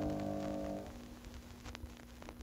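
The final chord of a solo piano piece dying away in the first second, then a quiet gap between tracks with faint scattered ticks of record surface noise and a faint steady hum.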